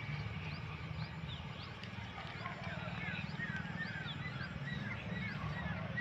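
Many small birds chirping, with short quick calls scattered throughout, over a steady low rumble.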